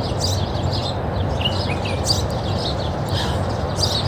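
Many small birds chirping, a quick run of short high calls one after another, over a steady low background rumble.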